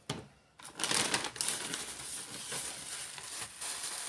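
Tissue paper crinkling and rustling as a wrapped baby garment is unwrapped and handled, a dense, continuous rustle that starts about half a second in.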